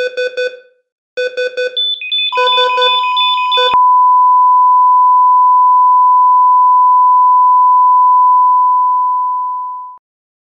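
Electronic glitch effect of rapid, buzzy beeps in short bursts, then a steady 1 kHz test tone of the kind broadcast with colour bars. The tone holds and fades out near the end.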